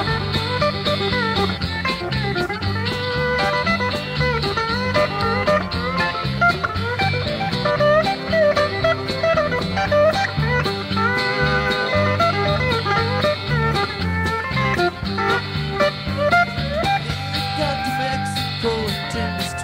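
A country-rock band playing an instrumental passage: electric guitars and a pedal steel guitar over electric bass and drums. Bending, gliding melody lines run throughout over a steady rhythm.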